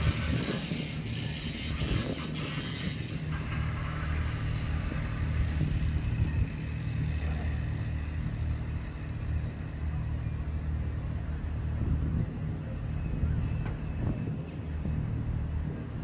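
A large engine running steadily, a low, even hum with a constant pitch, with some hiss in the first few seconds.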